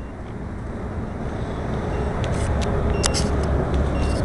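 A low rumble grows steadily louder, with a few sharp clicks in the second half as a finger handles the camera.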